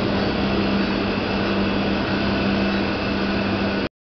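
Slit saw resharpening machine running: a steady low motor hum under an even grinding noise. It cuts off abruptly just before the end.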